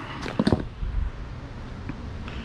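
Small objects being handled: a few brief knocks and rustles about half a second in as a device is picked up off a cardboard box, then low room noise and a faint click near the end.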